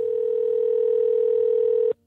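A single steady electronic tone, like a telephone dial tone, held at one pitch for about two seconds and then cut off sharply.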